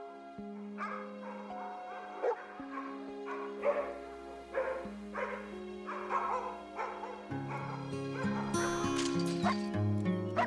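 Dogs barking in short, repeated bursts, about one every second, over music of long held chords; a low bass line comes in about two-thirds of the way through.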